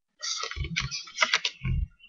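Playing cards being dealt off a deck onto a wooden tabletop: two bursts of quick clicks and card snaps, each with dull knocks on the table.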